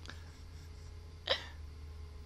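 A single short sound from a person close to the microphone, a little past halfway through, over a faint steady low hum.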